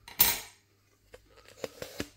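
Cutlery and plate sounds while a roast potato is eaten: a short, loud scraping noise just after the start, then a few light clicks.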